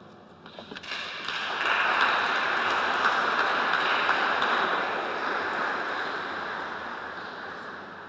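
Congregation applauding in a church. Scattered claps start about half a second in and swell into full applause within about a second, which then slowly dies away.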